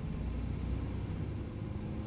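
Steady low rumble of a moving car's engine and road noise, heard from inside the cabin.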